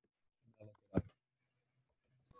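A single sharp click at the computer about a second in, with a fainter, softer sound just before it.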